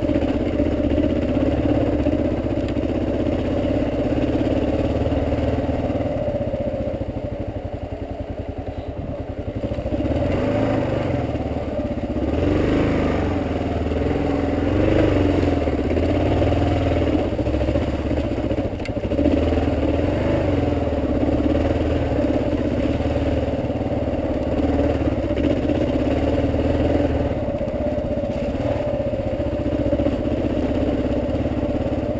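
Dual-sport motorcycle engine running at low trail speed over rough, rocky ground, with the bike clattering as it jolts over rocks. The engine eases off for a few seconds about a quarter of the way in, then picks up again.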